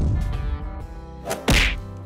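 Cartoon sound effects: a low rumble dying away, then a single sharp whack about one and a half seconds in, as the animated egg bursts open. Light background music plays underneath.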